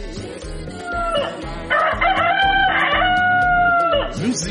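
A rooster crowing: one long crow that starts about a second in, rises and is then held, over background music with a steady beat.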